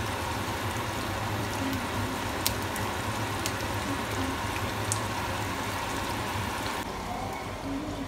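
Sausages sizzling in hot oil in a frying pan, with a few light clicks of a knife against the pan as they are turned. The sizzling cuts off shortly before the end.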